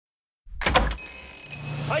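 A brief clatter of several sharp clicks just after half a second in, followed by a steady low hum, with a man's voice starting at the very end.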